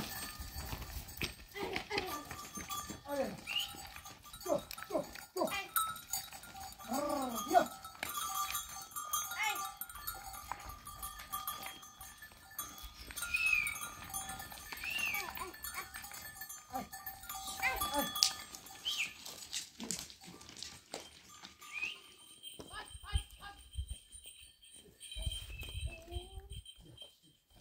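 A herd of goats and sheep bleating again and again, with a few high-pitched calls from young animals about halfway through.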